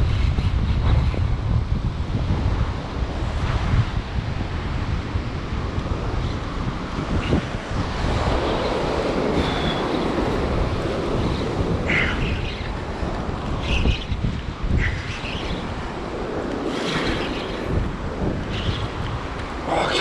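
Wind buffeting the microphone over surf breaking and washing up the beach, the wash swelling louder a few times.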